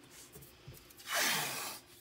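Painter's tape being pulled off the roll: one short rasping strip-off about a second in, lasting under a second, after some faint handling noise.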